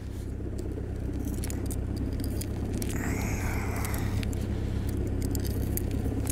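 Utility knife cutting and scraping at a tire sidewall frozen hard in the cold, which makes the rubber slow to give way: small clicks throughout and a scratchy stretch about three seconds in. A steady low hum runs underneath.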